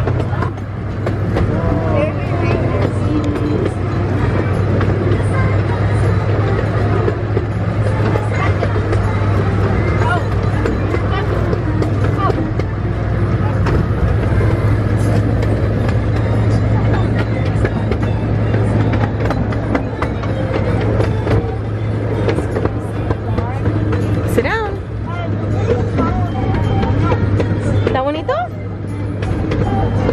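Steady low drone of a miniature ride train running, heard from aboard an open car in motion, with voices and scattered sounds over it.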